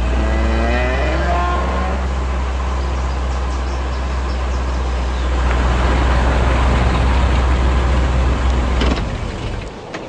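Cadillac convertible's engine revving up as the car pulls away, then running steadily with road noise while it drives; the sound drops away about nine seconds in.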